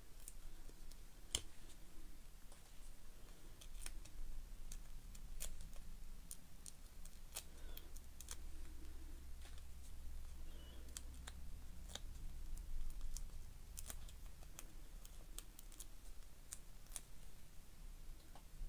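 Foam adhesive pads being peeled from their backing sheet and pressed onto a card tag: faint, irregular small clicks and paper crackles, spaced a second or so apart.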